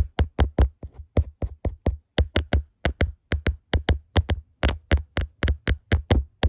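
A black-gloved hand tapping rapidly and evenly on the phone's microphone, about five taps a second, each with a dull thump.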